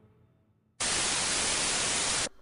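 A burst of TV-style static hiss used as a transition effect. It starts abruptly about a second in after near silence, holds at one steady loud level, and runs on past the end.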